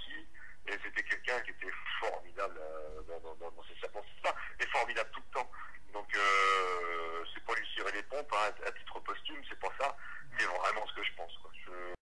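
A person talking, with a thin, telephone-like sound that lacks the high end.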